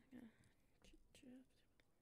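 A woman's very faint whispered murmuring, counting under her breath, with a couple of soft clicks in the middle.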